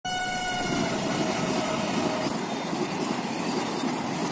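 A train running fast through a station, its horn sounding as the clip opens, falling slightly in pitch and dying away about two seconds in, over the steady rush and rumble of the passing coaches.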